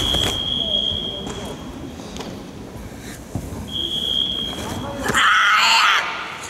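Karate kata performance: sharp snaps of the karate gi and footfalls on the mat, ending in a loud shout (kiai) for about the last second. A steady high electronic beep sounds through the first two seconds and again briefly around the middle.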